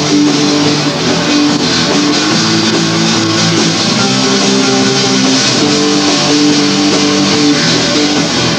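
Rock band playing live: electric guitars over bass in an instrumental passage, loud and steady.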